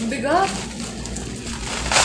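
Plastic bubble-wrap parcel rustling and crinkling as it is handled, with a louder crackle near the end.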